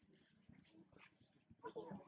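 Near silence: faint scattered ticks and rustles, with a short, faint voice-like call near the end.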